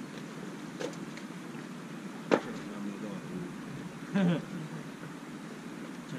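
A single sharp knock about two seconds in, the loudest sound, over a steady background hiss.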